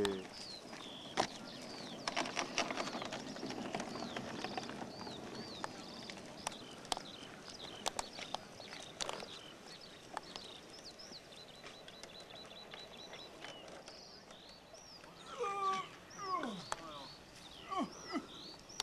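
Outdoor ambience with small birds chirping repeatedly in the background, scattered clicks and rustles, and a few short cries that fall in pitch about three seconds before the end.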